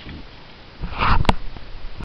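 A short, breathy rush of noise close to the microphone about a second in, ending in a single sharp click.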